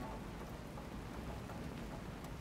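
The last piano note fades out at the start, leaving a faint, steady rain-like hiss: the background noise layer of a lo-fi beat.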